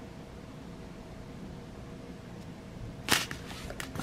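Quiet room tone with a faint steady hum, then a brief rustle and click about three seconds in, with a smaller one just before the end, as the craft kit is handled.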